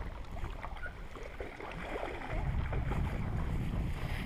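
Lake water lapping and trickling around an inflatable kayak, a scatter of small splashes and drips. A low wind rumble on the microphone grows louder about halfway through.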